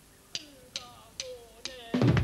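Drumsticks clicked together four times at an even tempo, about two clicks a second: the drummer's count-in for the band's next song.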